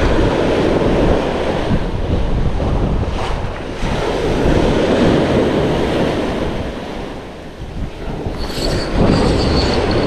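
Sea surf breaking on the shore in repeated swells, with wind buffeting the microphone. A high, thin squeal starts about eight seconds in and comes in short pulses to the end.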